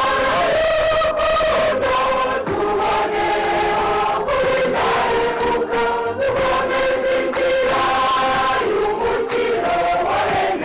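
Catholic church choir singing a song of thanks to God in several voices, holding each sung note for about a second before moving to the next.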